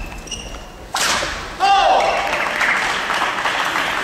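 Badminton rally in an indoor hall: a sharp racket strike on the shuttlecock about a second in, then court shoes squeaking on the floor as the players move.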